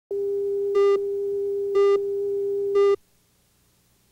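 Steady electronic reference tone on a videotape leader, with three short, louder, buzzier beeps about a second apart; it cuts off suddenly about three seconds in.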